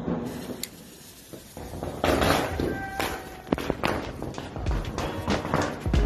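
Fireworks going off: a loud rush of noise about two seconds in, followed by a run of sharp bangs and pops.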